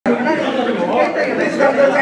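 Several men talking over one another in a room: overlapping chatter.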